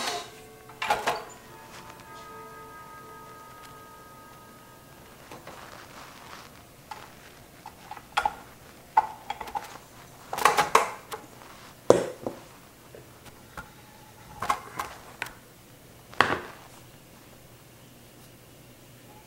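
Metal clinks and clanks from a stainless-steel stand-mixer bowl and dough hook being handled and taken off the mixer, a dozen or so separate sharp knocks with pauses between, with a faint steady tone for a few seconds near the start.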